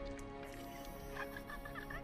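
Quiet film soundtrack: a steady sustained chord, with short wavering, warbling sounds in the second half.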